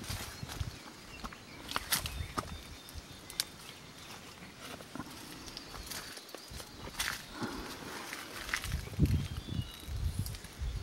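Footsteps and brushing through dry leaf litter, with scattered crackles and clicks and a few low bumps that grow heavier near the end.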